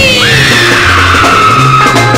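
Early-1960s surf-rock band playing an instrumental passage: a bass line and drums under a high sliding tone that falls slowly in pitch.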